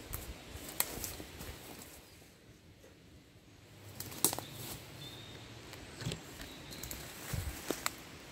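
Quiet footsteps and rustling through woodland undergrowth, broken by a few sharp clicks, with a short, faint bird whistle about five seconds in.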